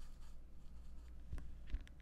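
Faint brushing and scratching of a small paintbrush working acrylic paint on a palette tray and canvas, with two light, sharp taps about a second and a half in.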